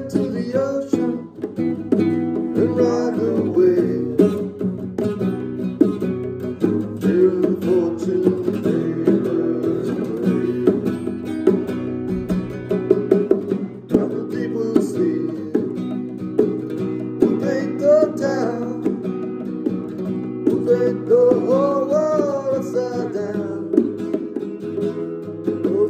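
Steel-string acoustic guitar strummed in a steady rhythm, with a melody line weaving over the chords at intervals, likely from a harmonica.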